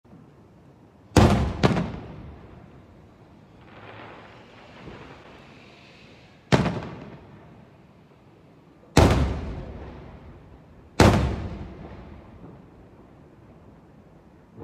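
Aerial firework shells bursting overhead: five loud bangs, two in quick succession about a second in, then three single bangs a few seconds apart, each trailing off in a rolling echo. A fainter hiss swells between the second and third bangs.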